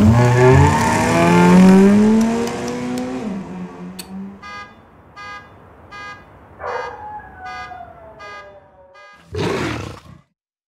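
Jaguar XE saloon's engine revving hard as it drives past, pitch climbing and then settling, for about three seconds. A quieter chirp then repeats about every 0.7 s, with a falling wail over it. It ends with a big cat's roar about a second before the end.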